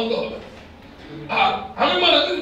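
A man speaking into a microphone in short phrases, with a brief pause in the middle.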